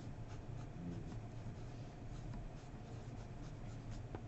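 Pen writing on paper: irregular, faint scratching strokes as an equation is written out by hand, over a low steady hum.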